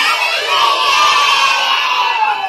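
A crowd of young children shouting and cheering together in one long, loud burst of many voices that slowly falls in pitch toward the end.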